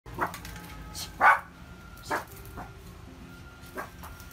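A toy poodle barking in alarm at a stranger in the house: four short, sharp barks about a second apart, the second the loudest.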